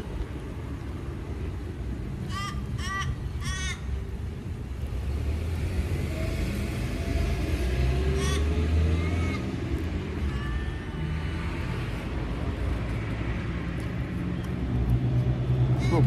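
A bird calls three times in quick succession about two to four seconds in, with other birds calling faintly later on. A low rumble swells and fades in the middle.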